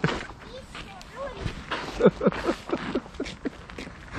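Faint voices of people talking, quieter than close speech, with some light hiss and a few faint clicks.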